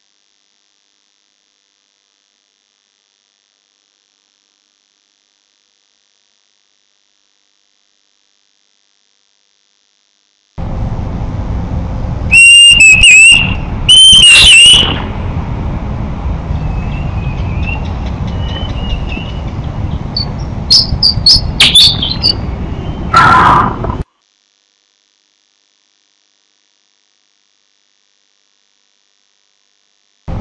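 Parabolic-microphone recording of bird calls played back: after silence, two loud whistled notes that clip, then fainter chirps and a run of higher chirps, all over steady background noise and hum. It stops suddenly a few seconds before the end.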